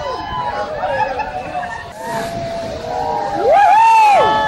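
A crowd shouting and whooping in many overlapping high calls, with one loud rising-and-falling whoop near the end, over a steady rush of water pouring through the dam's crest gates.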